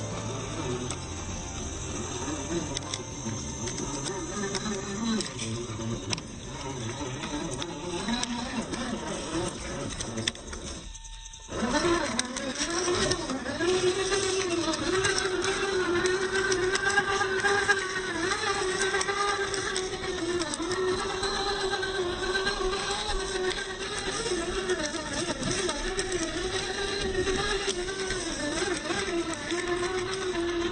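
Brushed 27-turn electric motor and gear drive of a Traxxas TRX-4 RC rock crawler whining, its pitch wavering up and down with the throttle as it crawls over rock. The sound drops out briefly about eleven seconds in.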